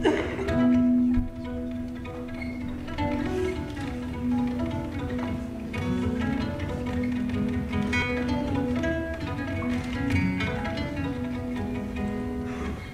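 Solo acoustic guitar played fingerstyle: a flowing line of plucked notes over a low note that keeps ringing and returning.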